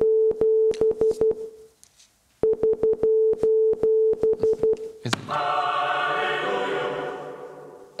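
Morse code beeps at a single steady pitch, the SOS distress signal sent as dot-dot-dot-dash-dash-dash-dot-dot-dot with no gaps between the letters. A run ends about two seconds in and, after a short pause, the signal plays again in full. A held chord of many voices follows and fades out over about three seconds.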